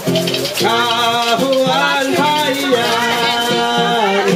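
Live acoustic music: an acoustic guitar played under a melody line that moves in pitch, with a rattling, shaker-like sound near the start.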